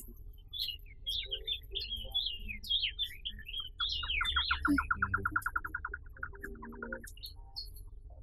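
Forest birds singing: a string of varied, quick high chirps, then a fast trill of rapidly repeated short notes for about three seconds that stops about a second before the end.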